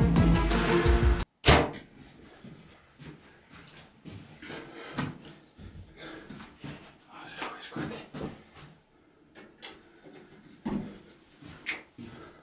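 Background music that cuts off about a second in, then a sharp knock followed by scattered light knocks, clicks and shuffling of a person moving about inside a small brick-walled hide.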